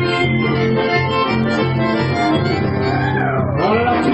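Live chamamé played instrumentally: button accordion and bandoneón holding the chords and melody over a steady electric bass line and strummed acoustic guitar.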